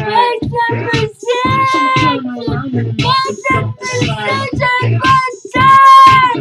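High-pitched singing over backed music with a steady beat, the voice holding long notes with the loudest one near the end.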